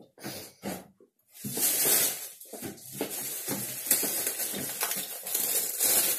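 Plastic shopping bag and packaging rustling and crinkling as groceries are pulled out. A few short handling sounds come first, then a brief pause about a second in, then continuous rustling.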